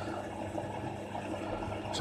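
Leaf blower-vacuum, used as a workshop dust extractor, running steadily at half speed: a constant motor hum under an even rush of air drawn through the hose.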